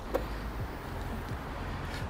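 Steady low outdoor rumble of background street noise, with a faint short click near the start as the car's front bonnet is lifted.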